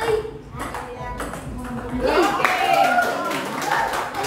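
Table tennis ball clicking off paddles and table in a quick rally, then voices calling out from about two seconds in.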